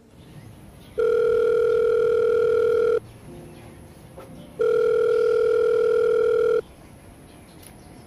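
Telephone ringback tone heard through a phone: two long, steady beeps of about two seconds each, separated by a pause of about a second and a half. The call is ringing and going unanswered.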